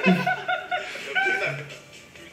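Men's voices speaking and chuckling, in two short bursts, over faint background music.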